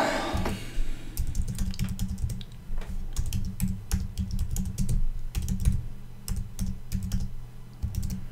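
Typing on a computer keyboard: an irregular run of quick key clicks, starting about a second in.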